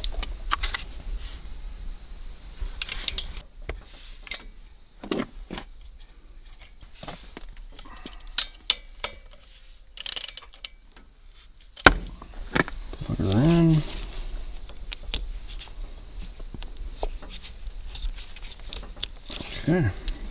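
Scattered metallic clicks and clinks of a ratcheting wrench working the mounting bolts of a diesel tractor's fuel shutoff solenoid, with a brief burst of clicking about ten seconds in. A short wordless voice sound comes about two-thirds of the way through.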